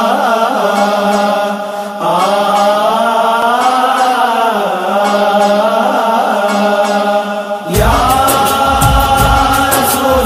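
Intro of a devotional naat: long, held, wordless chanted notes that shift in pitch every second or two, joined suddenly about three-quarters of the way through by a steady percussion beat.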